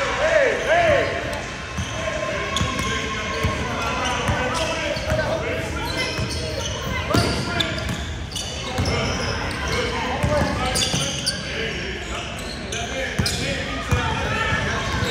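Basketball bouncing on a hardwood gym floor during a game, with repeated short thuds, under indistinct voices of players and spectators echoing in the large gym.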